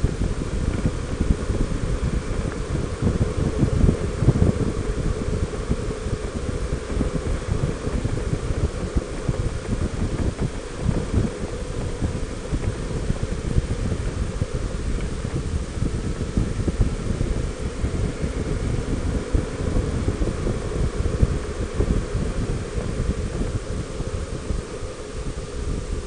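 Wind buffeting the microphone of a camera mounted on a moving Honda Gold Wing 1800 motorcycle, a steady, gusty rush from riding at road speed, with road and motorcycle noise beneath it.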